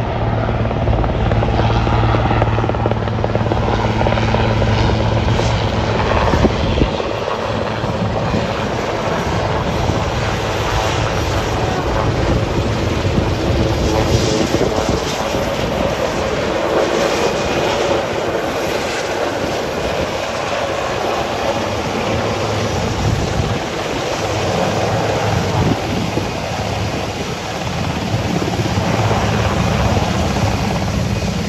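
Marine One, a Sikorsky VH-3D Sea King helicopter, flying low and descending to land: steady, loud rotor and turbine noise, with a deep hum that is strongest in the first several seconds and eases after that.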